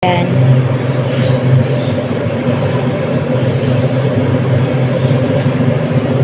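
A steady, low mechanical drone, like a motor running without pause.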